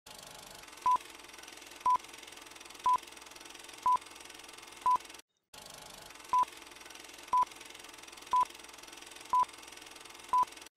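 Short electronic beeps, each a single high tone, repeating evenly once a second, nine in all, over faint steady hiss; the sound drops out briefly about five seconds in.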